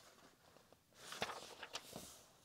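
Paper pages of a softcover textbook rustling and flicking as a hand turns them. It starts about halfway through, as a soft rustle with a few sharp paper snaps.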